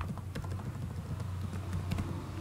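Computer keyboard being typed on: a few scattered key clicks over a steady low hum.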